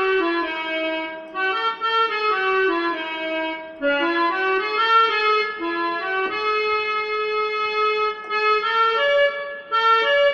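Electronic keyboard playing a single-note melody line, one held note after another stepping up and down, with short pauses between phrases.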